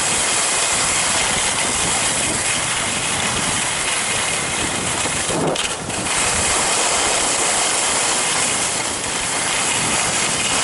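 Telemark skis hissing and scraping over groomed snow during a descent, mixed with wind rushing over the helmet camera's microphone. The hiss is loud and steady, with a brief break about halfway through, as between turns.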